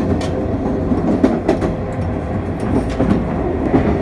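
Inside a JR East 719 series electric multiple unit on the move: a steady low rumble of the car, with irregular clicks of the wheels over rail joints and a faint steady hum.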